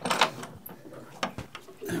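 A few sharp clicks and knocks from a stainless steel outrigger base as it is unlocked and the carbon outrigger pole is swung out.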